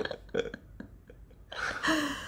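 Suppressed laughter: a few short breathy laugh pulses, then a longer raspy vocal sound about one and a half seconds in.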